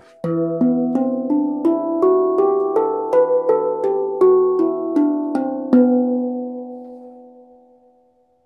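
Steel handpan tuned in E minor, struck with the fingers: a run of ringing melodic notes at about three a second, then the last notes sustain and fade out over the final couple of seconds.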